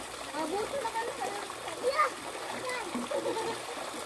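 Pool fountains splashing steadily into the water, with distant voices of several people talking and calling, one call a little louder about two seconds in.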